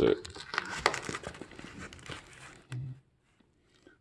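Plastic wrapping around a foam-packed part crinkling and tearing as it is pulled open by hand: a dense run of crackles that dies away about three seconds in.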